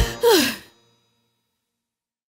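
A cartoon character's voiced sigh, falling in pitch and lasting about half a second, just as the music stops. Silence follows.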